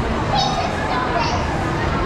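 A young child's high-pitched voice calling out twice over the steady background hubbub of a busy indoor shopping centre.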